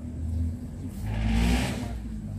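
A motor vehicle's engine running as a low steady rumble, with a rush of noise that swells in the second half and fades near the end, like a vehicle passing.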